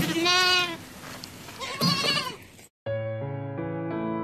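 A goat bleats twice: one call right at the start and a second, wavering call about two seconds in. Piano music starts near the end.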